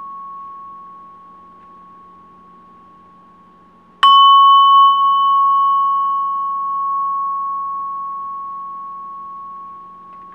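Singing bowl ringing. The tone of an earlier strike is dying away, and about four seconds in the bowl is struck again. A clear steady tone follows, with a higher overtone that fades after a few seconds while the main tone rings on and slowly decays.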